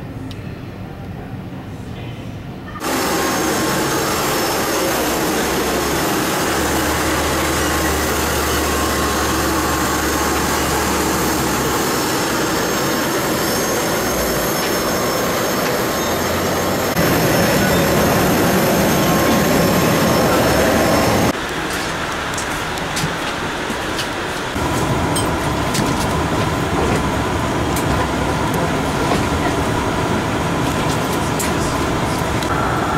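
Loud, steady roar of aircraft and ramp equipment on the airport apron, with a thin steady whine running through it. It starts abruptly about three seconds in and changes level and character suddenly several times.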